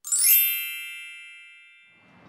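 A sparkling chime sound effect: a quick bright shimmer of many bell-like tones that rings on and fades away over about two seconds.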